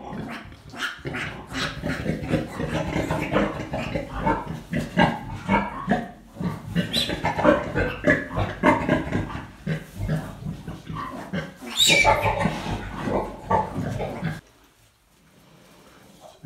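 Gloucester Old Spot sow grunting as her newborn piglets suckle and squeal at her teats, with one sharp high squeal about twelve seconds in. The calls stop suddenly about a second and a half before the end.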